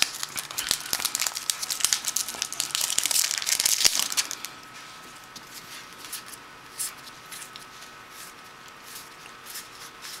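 Foil wrapper of a Yu-Gi-Oh booster pack crinkling and tearing as it is opened, for about four seconds. Then much quieter handling of the cards, with a few light clicks.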